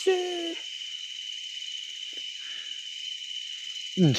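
A single short, steady hoot-like call at the very start, over a continuous high chirring of crickets or other night insects.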